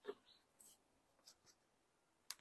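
Faint scratching and rustling of green plastic grafting tape being handled and peeled off its roll, a few short soft scrapes.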